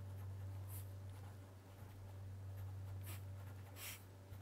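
Wooden pencil writing on paper: faint scratching, with short strokes just before one second, around three seconds and just before the end, over a steady low hum.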